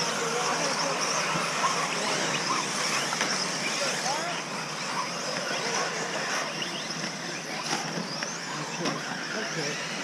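Electric RC buggies racing on a dirt track, their motors whining in many short rising and falling sweeps over a steady hiss, with people talking in the background.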